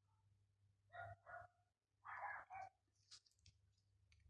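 Near silence, broken by a few faint short sounds: two pairs of brief sounds about a second apart, then a couple of faint high clicks near the end.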